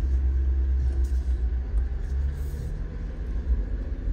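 Steady low rumble of a vehicle driving slowly on a dirt road, heard from inside the cabin.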